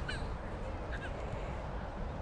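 Two short bird calls, one right at the start and another about a second in, over a steady low outdoor rumble.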